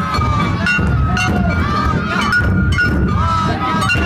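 Japanese festival float music played live: taiko drums beating hard under a clanging metal hand bell struck several times a second, with a high held flute-like melody stepping between a few notes over it. Shouting voices from the players and crowd are mixed in.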